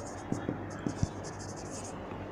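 Marker pen writing on a whiteboard: a quick run of short, high scratching strokes as a word is written, with a few light ticks in the first second.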